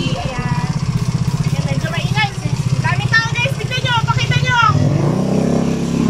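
A vehicle engine idling steadily, with voices over it around the middle.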